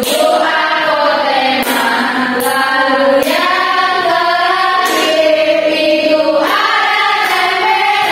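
A group of female voices singing a song together, with hand claps on the beat.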